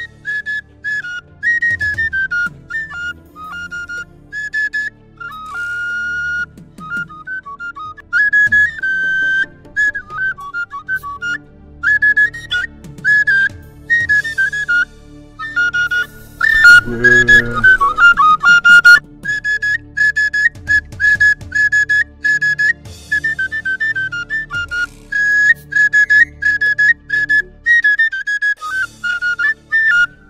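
Film background music: a high flute melody of quick, changing notes over a low steady backing, with a louder, fuller passage about halfway through.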